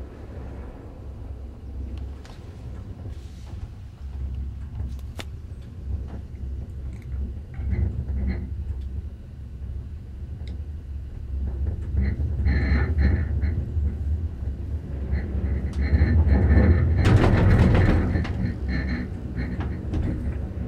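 Low rumble and rattle of a moving cable car cabin heard from inside, swelling louder in the second half and loudest about three-quarters of the way through.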